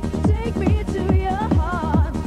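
1995 oldskool rave DJ mix playing from a cassette tape: a fast electronic dance track with a pitch-dropping kick drum at about three beats a second and bending, warbling melodic lines above it.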